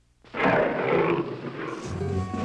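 Animated dragon's roar sound effect: a sudden loud, rasping roar that starts a moment in after near silence and lasts about a second and a half, with music coming back in near the end.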